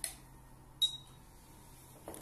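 Handheld barcode scanner of a rugged PDA, the Bright Alliance BH9, reading barcodes: a brief click at the start, then just under a second in a click with a short high beep, the scanner's signal of a successful read.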